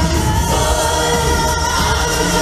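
A mixed vocal group of men and women singing a pop song together over a backing track with a steady bass.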